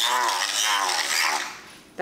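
A battery handheld milk frother whirring in a small plastic cup, mixing green mica into castor oil, its pitch wavering as it churns. It cuts off about one and a half seconds in.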